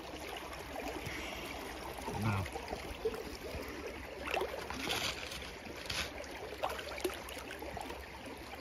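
Shallow creek water running over rocks, with a few short splashes and knocks as a stick pokes and stirs the silt of the creek bed.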